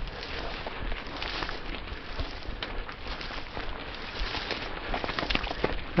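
Mountain bike moving along an overgrown singletrack, with brush scraping and crackling against the bike and rider, scattered small ticks and rattles, and a low rumble underneath.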